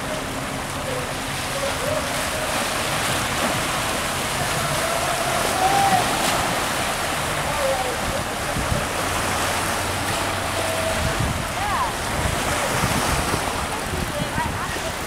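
Steady outdoor wind and water noise at the waterfront, with faint voices in the background.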